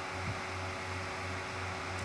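Steady background hiss with a low electrical hum and a faint steady tone: the recording's noise floor, with no speech.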